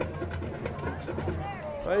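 Faint background voices over a steady low hum, then a man's voice starts speaking near the end.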